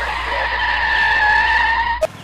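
Car tyres screeching as a car skids to a stop: one steady, high squeal that dips slightly in pitch near the end and cuts off suddenly.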